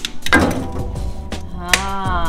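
A piece of firewood thrown into a burning wood fireplace lands on the fire with a short knock about a third of a second in. Background music with a steady beat plays throughout.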